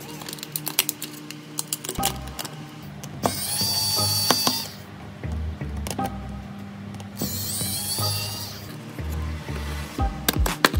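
A small electric precision screwdriver whirs in two short bursts, one about three seconds in and one about seven seconds in, as it backs screws out of a phone's metal midframe. Light clicks of small parts being handled come between the bursts.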